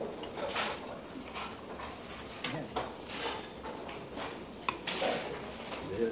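A metal spoon scooping and stirring in an earthenware bowl of hot soup, with scattered soft knocks and scrapes.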